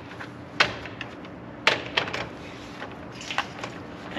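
A few short metallic clicks and knocks, spread over several seconds, as a right-angle cordless drill's winch bit is fitted into the top socket of a Harken two-speed winch.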